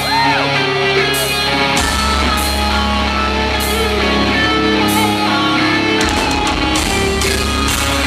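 Heavy metal band playing live: distorted electric guitars with bass and drums, loud, heard from the crowd in a large venue.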